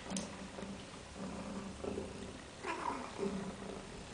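A pet's low, rumbling vocal sound that comes and goes in short stretches, with a short falling cry about three seconds in.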